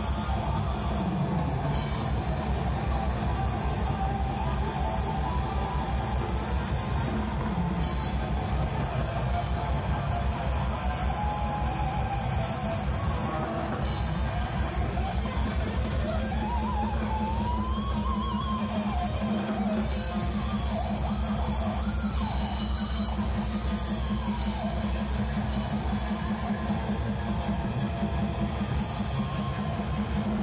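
Metal band playing live: distorted electric guitars, bass and fast drumming, heard as the room sound of the venue.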